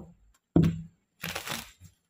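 A tarot deck being handled and shuffled: a knock about half a second in, then a short rustling rush of cards riffling.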